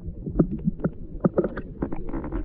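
Muffled underwater sound: a steady low rumble of moving water with about seven irregular sharp clicks and knocks.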